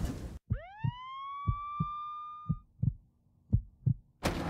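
Heartbeat sound effect: paired low thumps, about one pair a second. Over the first half, a single tone sweeps quickly upward, holds high and steady, then cuts off abruptly.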